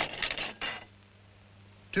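Small pieces of metal jewellery chinking and rattling against a tabletop in a short cluster of clinks lasting under a second, with a bright ringing edge, over the faint steady hum of an old film soundtrack.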